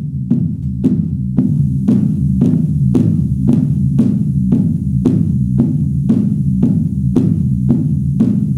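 Electronic music played on an ARP 2600 analog synthesizer: a sustained low droning bass under sharp, regular clicking hits about twice a second. A faint high tone comes in about a second and a half in.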